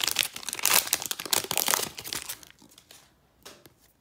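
Foil trading-card pack wrapper being torn open and crinkled in the hands, dense crackling for about two and a half seconds. It then goes much quieter, with a few light clicks as the cards are slid out.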